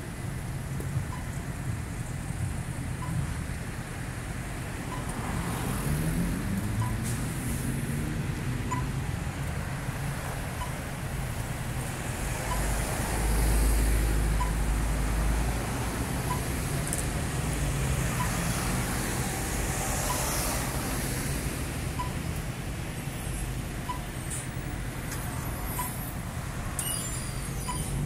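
City street traffic: a steady hum of cars passing. Its loudest stretch is a deep rumble from a close-passing vehicle around the middle. A faint short beep repeats about every two seconds.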